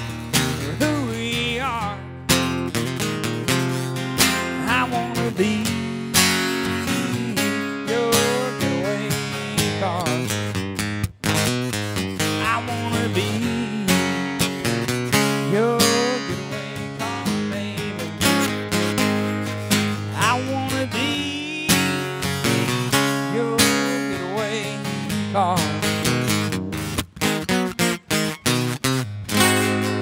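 Acoustic guitar strummed steadily in an instrumental passage, chords ringing between strokes; near the end the strums turn short and choppy, with brief gaps between them.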